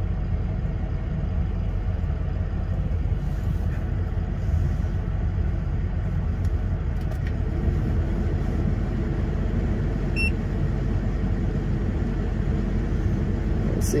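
The 2006 Ford F-350's 6.0-litre turbo-diesel V8 idling steadily with a low, even rumble, heard from inside the cab.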